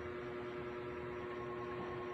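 A steady hum with a faint background hiss and no distinct events.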